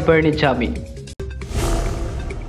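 A news-bulletin transition sound effect: a noisy whoosh with a low rumble swelling up about one and a half seconds in, over background music. The end of a narrator's sentence comes just before it.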